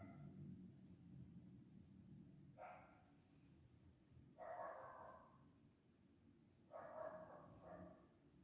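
Near silence: room tone, with four faint, brief pitched sounds in the background.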